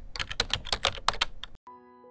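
Computer keyboard typing, a quick run of key clicks that stops about one and a half seconds in, followed by a held chord of steady tones.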